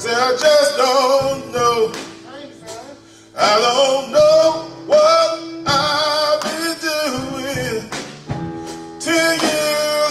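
A men's gospel chorus singing, a lead male voice at the microphone holding long wavering notes. The phrases drop away briefly about two seconds in and again near the end before the singing picks back up.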